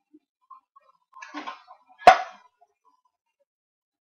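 A single sharp metallic ping about two seconds in, with a brief ring: a home-canning jar's lid popping down as the jar cools, the sign that it has sealed. It is preceded by a faint scraping rustle as a jar is lifted out of the pressure canner.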